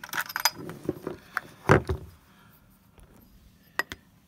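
Handling noise of a small M42-to-Canon EOS lens adapter and its plastic body cap: a run of light clicks and clinks, a louder knock just under two seconds in, and one more sharp click near the end.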